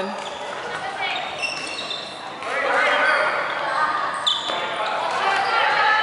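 Dodgeballs bouncing and striking on a wooden sports-hall floor amid players' shouts, echoing in the large hall. About two and a half seconds in the voices grow louder into a sustained raised call that carries on to the end.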